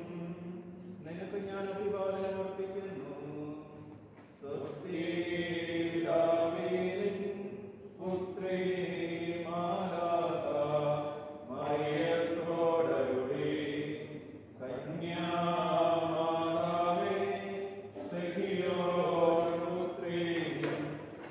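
Chanted singing of a funeral liturgy: a hymn intoned in held phrases of about three seconds, each separated by a short break for breath.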